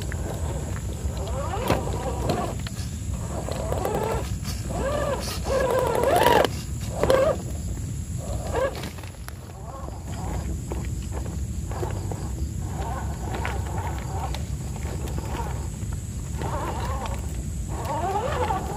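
RC rock crawler's electric motor and geared drivetrain whining, the pitch rising and falling with the throttle as it climbs over wet rocks, with scattered clicks and knocks of tyres and chassis on stone. It is loudest about six to seven seconds in.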